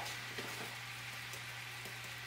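Cream sauce simmering in a frying pan, a faint steady sizzle over a low hum, with a couple of faint ticks.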